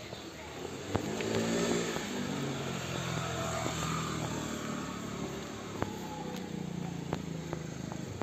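Motor scooter engine revving up about a second in, then running steadily at a low pitch.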